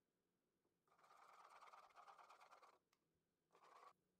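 Faint metal spoon scraping: one scratchy stretch of about two seconds, then a brief second scrape near the end.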